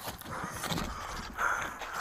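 Low rustling and scattered knocks of clothing and gear rubbing against a body-worn police camera's microphone.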